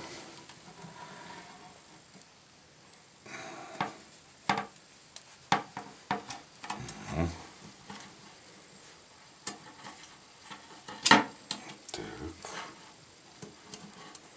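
Handling noise from copper tubing and wires being worked by hand as insulated wires with crimp terminals are pushed into the end of a copper-tube antenna loop: scattered small clicks, rubs and light knocks at uneven intervals, the sharpest knock about eleven seconds in.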